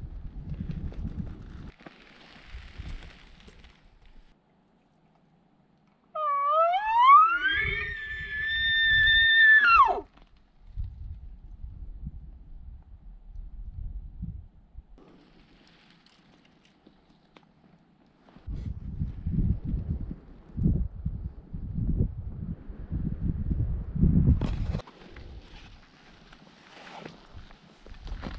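Elk bugle call blown on a hunter's bugle tube: one rising whistle that climbs, is held high, then cuts off suddenly, with a low rumble under it. Several seconds of low rumbling follow later.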